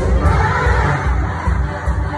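Many young voices shouting together in a loud massed burst, over a backing track with a steady pulsing bass beat.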